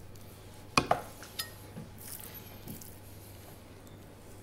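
Knife working on a chopping board as brown fat and skin are trimmed from a salmon fillet: two light clicks about a second in, a smaller one just after, then a short high scrape near two seconds.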